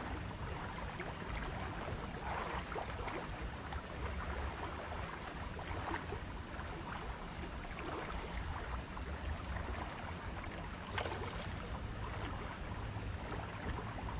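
Steady outdoor ambience of wind rumbling on the microphone, with a few faint short sounds now and then.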